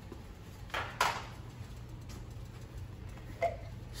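Handling noise from a glass jar of chopped jalapeños, over a low steady hum: a sharp click about a second in, then a short faint rasp near the end as the metal lid is unscrewed.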